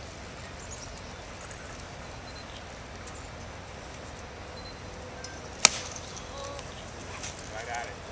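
A golf club striking the ball off the tee: one sharp click about five and a half seconds in, standing out over the faint murmur of spectators.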